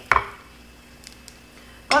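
A short knock of a nonstick frying pan right at the start, then a couple of faint small clicks as a few fried ginkgo nuts are tipped out of the pan onto a paper towel.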